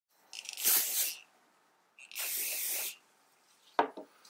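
Two hissing sprays from a small hand-held spray bottle, each about a second long, with a gap of about a second between them. A brief sharp sound follows near the end.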